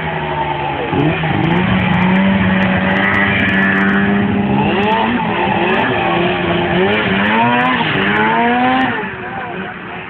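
Snowmobile engine running at high revs: it holds a steady pitch for a few seconds, then revs up and down several times before dropping away near the end.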